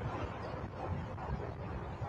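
Steady outdoor background noise: a low rumble with faint, indistinct voices in it.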